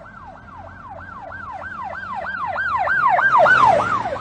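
Police car siren yelping: a rapid run of falling whoops, a little over three a second, getting steadily louder toward the end.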